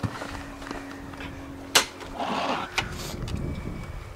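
Someone moving about on a boat, with footsteps and handling noise: one sharp knock just before two seconds in, then about a second of rushing noise and a few light clicks, over a faint steady hum.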